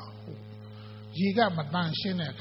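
Steady electrical mains hum, with a man's voice speaking into a microphone starting a little over a second in.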